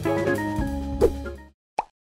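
Background music with guitar and drums that cuts off suddenly about one and a half seconds in, followed by a single short pop near the end.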